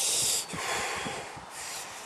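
A man's heavy, breathy exhale acting out a runner's exhaustion. The loud part ends about half a second in, and fainter breathing follows.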